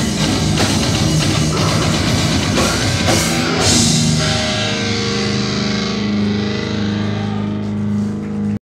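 Heavy metal band playing live: distorted electric guitars, bass and drum kit. About three and a half seconds in, a cymbal crash ends the drumming and the guitars and bass hold a final ringing chord whose top slowly fades.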